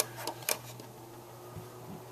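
Nismile oscillating desk tower fan running with a faint steady hum. Two short clicks, about half a second apart near the start, as the buttons on its top control panel are pressed.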